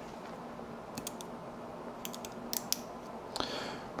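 A handful of light clicks and taps from small night-vision pod parts being handled and fitted by hand, over a faint steady hum.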